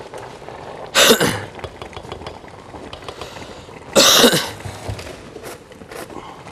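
A person coughing twice, short harsh coughs about three seconds apart, over a low steady background.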